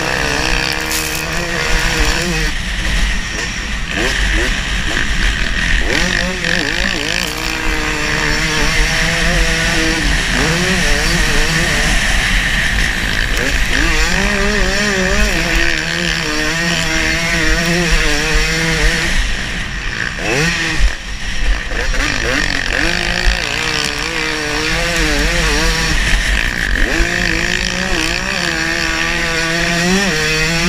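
Dirt bike engine revving up and down as it is ridden hard over a motocross track, with wind rushing over the mounted camera's microphone. The throttle closes briefly about two-thirds of the way through, then picks up again.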